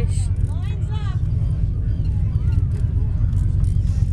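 Steady low rumble of a fishing boat's engine, with an excited "yes" and laughter at the start and other voices around.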